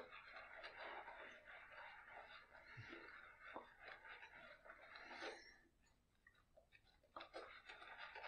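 Faint scratching of an Uno single-blade cartridge razor drawn through shaving lather over stubble, in a few short strokes with small ticks between them.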